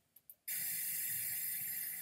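Steady background hiss with a faint low hum, starting about half a second in: the room tone of a recorded talk as its playback begins.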